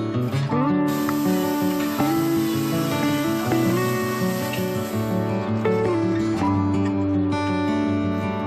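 Background music led by acoustic guitar, with strummed and sliding notes. A steady high hiss sits under it from about a second in until about five seconds in.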